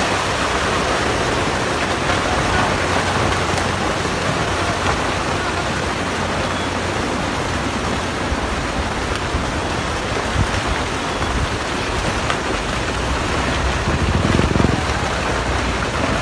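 Steady rushing noise of a landslide sliding mud, water and rock down a hillside, with a louder low rumble near the end as debris tumbles down the slope.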